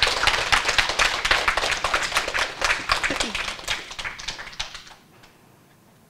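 Small audience applauding, the clapping thinning out and dying away about five seconds in.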